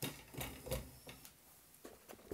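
A few light knocks and clicks with some rustling, bunched in the first second, from a desk lamp being handled and moved closer; quieter after that, with one faint click near the end.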